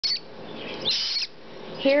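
A baby Triton cockatoo chick giving raspy, screechy begging calls: a very short one at the start and a longer rasping one about a second in. The hand-fed chick is gaping for food.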